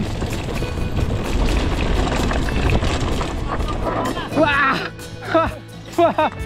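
Wind buffeting a handlebar-mounted action camera's microphone as a mountain bike rolls fast down a dry dirt trail, tyres crunching over the loose surface. Near the end a rider's voice calls out briefly.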